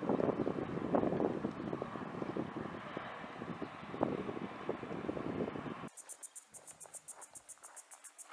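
A loud rushing, crackling noise for about six seconds that cuts off abruptly. After it, insects keep up a fast, high-pitched pulsing chirr.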